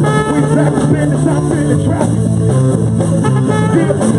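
Live rock band playing a funky instrumental passage: electric guitars, bass guitar and drum kit, with a trumpet playing over them.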